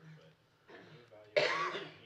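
A single sharp cough about one and a half seconds in, after faint murmured voices.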